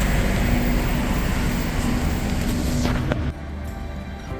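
Street traffic noise with a steady low rumble and a held engine-like tone. A little over three seconds in it cuts off suddenly, and soft background music with long held notes takes over.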